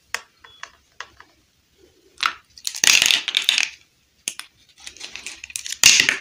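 Small plastic dollhouse furniture pieces being handled and set down: scattered light clicks and taps, with a noisy rattling burst lasting about a second around three seconds in and another sharp clatter near the end.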